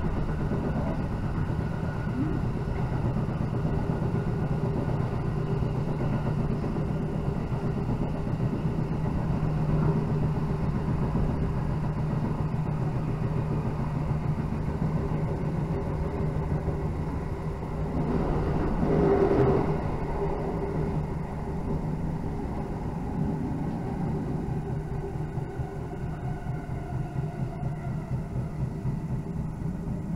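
Electric train running along the line, heard from inside the passenger car: a steady rumble of wheels on rail with a low, even drone. The sound swells briefly about two-thirds of the way through.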